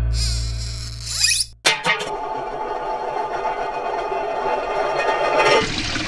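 A low ringing tone fades under a high rising swish and cuts off, followed by a few sharp clicks. A steady insect-like buzz then runs for about three and a half seconds. Near the end it gives way to a rushing noise.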